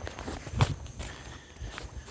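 Footsteps of a person walking: a few separate steps.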